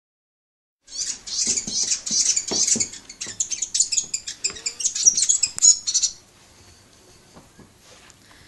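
New Zealand fantail chirping in a rapid run of sharp, high cheeps, starting about a second in and stopping after about five seconds.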